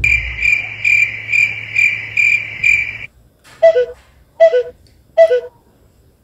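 Crickets chirping: a steady high trill that pulses about twice a second over a low hum, cut off abruptly about three seconds in. After it come three short, loud sounds, evenly spaced under a second apart, each dropping from one pitch to a lower one.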